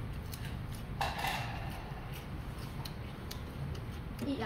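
Light clicks and taps of chopsticks and tableware, with a sharper clatter about a second in, over a low steady hum.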